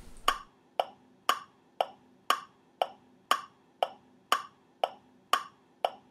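A steady ticking sound effect: sharp, evenly spaced ticks, about two a second.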